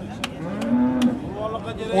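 Cattle lowing: one low moo about a second long, rising a little and then falling away.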